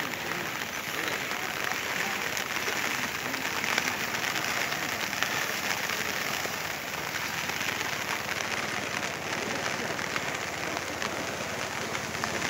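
Heavy monsoon rain falling, a steady dense patter of drops that goes on without a break.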